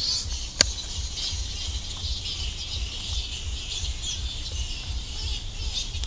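Outdoor ambience of birds chirping and insects, steady and high, over a low rumble, with a single sharp click about half a second in.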